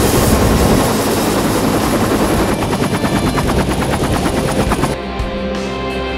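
Bell UH-1 Huey helicopter running close by, its rotor giving a loud, rapid, even chop. About five seconds in, rock guitar music takes over.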